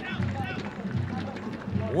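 Football stadium crowd sound: a drum beating steadily, about three beats every two seconds, under faint chanting voices.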